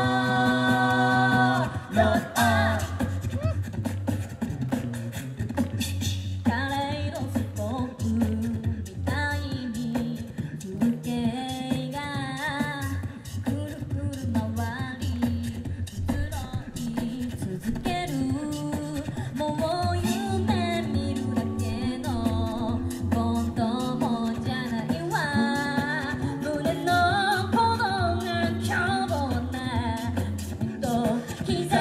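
A cappella vocal group singing through a PA: a held chord for the first two seconds, then a lead melody over a sung bass line and beatboxed percussion.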